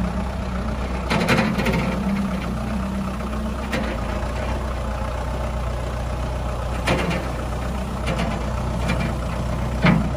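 Kubota M59 tractor loader backhoe's diesel engine running steadily while the front loader bucket is lowered and the tractor moves off over gravel. Sharp knocks sound about a second in, again about seven seconds in, and once more near the end.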